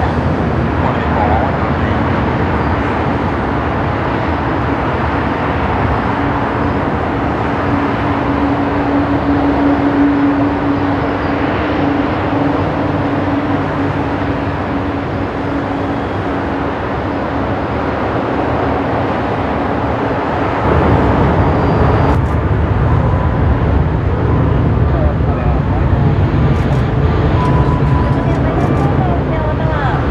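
Jet airliner engines during climb-out after takeoff: a steady, loud rumble with a held tone. About 21 seconds in, the sound cuts to another airliner climbing out, deeper and louder.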